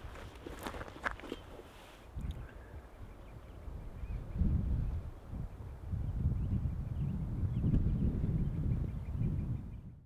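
Wind buffeting the microphone: an uneven low rumble that grows much stronger about four seconds in and fades out at the end. A few light clicks come near the start, from a backpack's chest-strap buckle being fastened.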